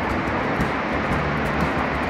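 Steady outdoor background noise: an even hiss and low hum with no distinct events.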